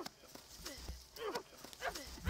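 Quick, soft footsteps of a person running through grass, about two steps a second, faint.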